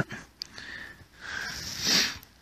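A person breathing out close to the microphone: a soft, breathy rush that swells to its loudest near the end.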